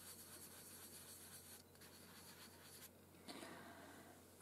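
Near silence with faint rubbing of a fingertip blending soft pastel into paper, a little louder near the end.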